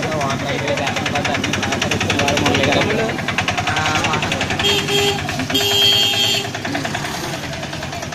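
A small vehicle engine running close by with a rapid, even beat, under people talking. Two short steady tones come about five and six seconds in, the second lasting about a second.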